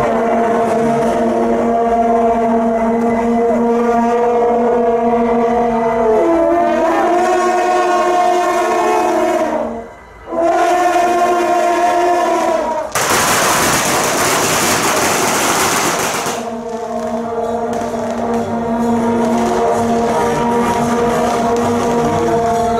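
Long brass processional horns sounding held notes together, shifting pitch about six seconds in and breaking off briefly near ten seconds. A dense crackling run of firecrackers, about three and a half seconds long, then drowns them out before the horns' held notes return.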